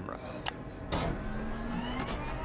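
A sharp click about half a second in, then a low steady hum with a faint rising whine above it, building towards the cut to the shuttle footage.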